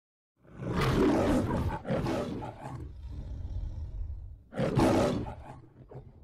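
The MGM studio logo's lion roar: a lion roaring three times, the first two back to back, a low rumble, then the third near the end, fading out.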